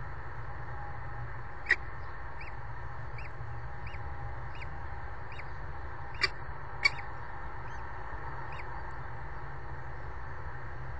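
Common kestrel chick giving soft begging peeps about one every three quarters of a second while being fed, with three louder sharp squeaks, over a steady low hum.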